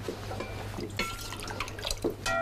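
Light clinks and taps of a serving spoon against a cooking pot and dishes as rice is served, with a few brief ringing notes about a second in.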